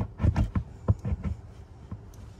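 A few soft knocks and rubs from a carpet-covered plastic console trim panel being handled and lined up against the footwell, bunched in the first second or so, then quieter.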